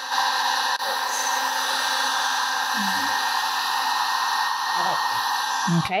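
Electric heat gun blowing steadily over wet countertop epoxy to push the colours together. It stops just before the end.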